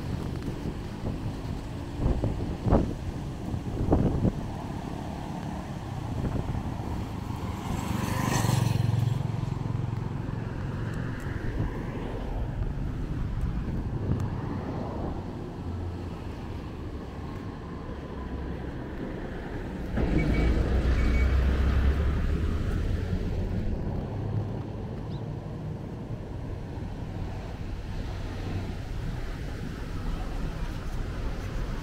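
Street sounds with motor vehicles passing: one a little over a quarter of the way in, and a louder, deeper one about two-thirds of the way in. Two sharp knocks come early on.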